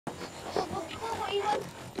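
A man yelling in a rough, raised voice.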